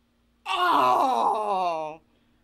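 A woman's loud, wordless wail that slides steadily down in pitch. It starts about half a second in and stops abruptly about a second and a half later.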